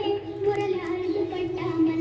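A song: a high voice singing held, gliding notes over musical accompaniment.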